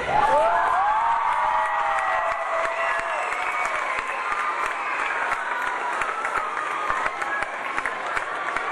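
An audience of schoolchildren applauding and cheering, with high-pitched shouts and whoops over the clapping, loudest in the first few seconds.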